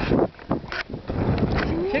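Wind buffeting the microphone, with a few short bursts of splashing from a child kicking while swimming.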